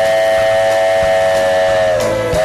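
A sung imitation of a steam locomotive's chime whistle, a few close tones held as one long steady blast, loud over the country band.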